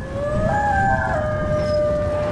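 Cinematic logo-reveal sound effect: a low, dense rumble under a pitched tone that glides upward over the first second and then holds steady.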